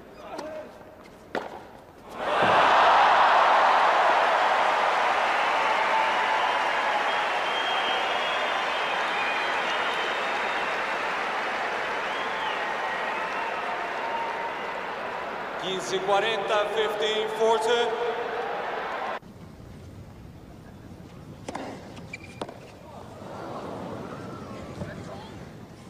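A large crowd cheering and applauding, starting suddenly and loudly about two seconds in just after a couple of sharp knocks, then slowly dying down. Voices rise over it a little before it cuts off abruptly about five seconds before the end.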